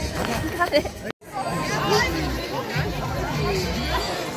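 Background chatter of several people talking at once, with the sound cutting out completely for a moment about a second in.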